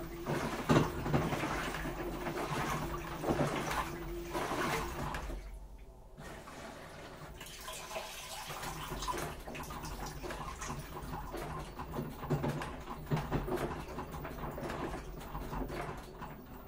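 Washing machine mid-cycle: water sloshing in the turning drum over a low motor hum, with surges of water every second or two. The sloshing drops off briefly about five seconds in, then starts again.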